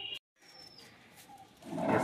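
Faint background noise, broken by a moment of dead silence at an edit. Near the end a man's voice starts to come in.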